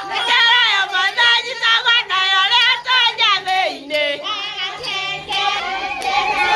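Several women singing together in high voices, the pitch wavering.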